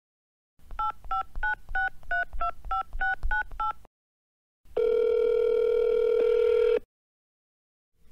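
Telephone keypad touch-tones: about ten DTMF digits dialled quickly, roughly three a second, as a phone number is entered. After a short pause comes a single steady ring of about two seconds, the ringback tone of the outgoing call.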